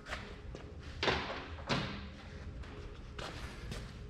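A few dull thumps and knocks from hand tools being handled on the tractor's front end, with lighter ticks near the end.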